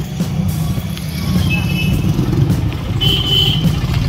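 Street traffic heard from a moving bicycle, under heavy wind rumble on the microphone, with two short high beeps, one about a second and a half in and one at three seconds.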